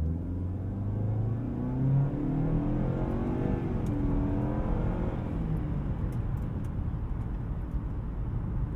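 A 2024 Nissan Altima's 2.5-litre four-cylinder engine, driving through its CVT, pulling away from a stop under acceleration, heard from inside the cabin. The engine note rises over the first couple of seconds, then holds fairly steady while road noise carries on underneath.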